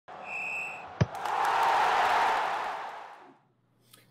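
Intro sound effects: a short, steady, high whistle tone, a sharp thump about a second in, then a rushing, crowd-like noise that swells and fades away.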